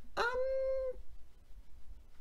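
Only speech: a young man's drawn-out "um" hesitation, held at one pitch for under a second, followed by a pause.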